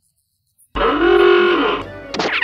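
Near silence, then, under a second in, a cartoon character's loud, drawn-out vocal exclamation of amazement that rises and falls in pitch and lasts about a second.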